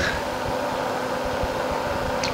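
Room tone: a steady, even hiss with a low steady hum underneath.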